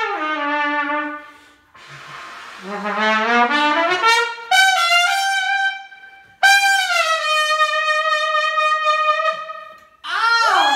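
Solo trumpet played unaccompanied: a note bending down at the start, rising runs around three to five seconds in, then a long held closing note from about six and a half seconds that fades away.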